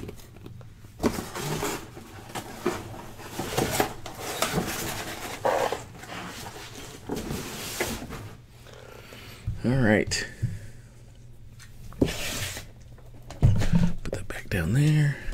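Shrink-wrapped cardboard boxes of trading cards being handled on a table: scattered plastic crinkles and light taps and scrapes of the boxes. A short vocal sound comes about ten seconds in.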